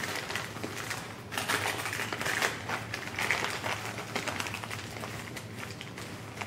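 Gift-wrapping paper crinkling and rustling as a child's fingers pick at it and tear it open, heard as a run of small irregular crackles and ticks.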